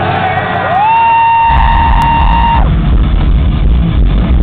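Hardcore band playing live: a long high note slides up and is held for about two seconds, and about a second and a half in the full band comes in with heavy bass and drums.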